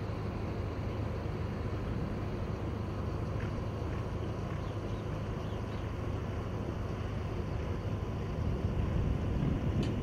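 Steady outdoor background rumble, strongest in the low range, with no distinct events.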